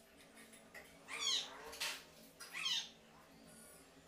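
An animal calls twice, each call sweeping downward in pitch, with a short hiss-like burst between the two calls.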